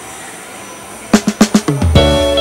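Steady background noise for about a second, then a quick drum fill of rapid snare and kick hits that leads into a music track.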